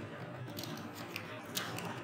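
Computer keyboard being typed on: about half a dozen light, separate key clicks spread over two seconds.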